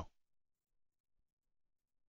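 Near silence: a gap in the voice-over.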